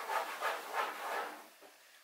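A microfiber cloth rubbed back and forth on a bathroom countertop in quick strokes, about four or five a second, fading out about a second and a half in.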